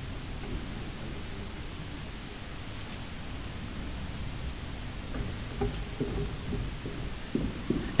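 Steady hiss of a hall's room tone with faint rustling, and a few soft knocks in the last few seconds.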